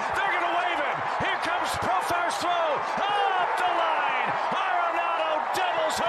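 Stadium crowd noise from a baseball TV broadcast: a steady, dense babble of many voices shouting, with scattered sharp claps, as runners score on a hit.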